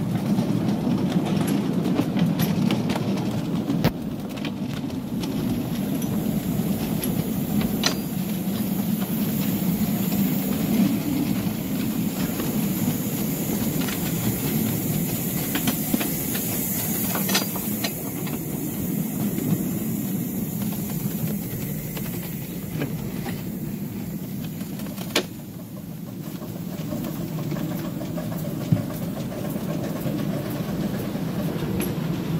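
Miniature railway train running, heard from a riding car: a steady rumble of wheels on the track with occasional sharp clicks.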